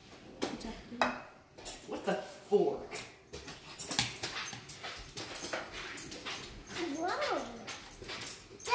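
German shepherd whining, with a short rising-and-falling whine about seven seconds in, among scattered clinks of a serving spoon against a ceramic bowl and plates.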